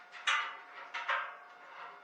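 Two short metallic clanks about three-quarters of a second apart, from parts of an aluminum table frame being handled and fitted.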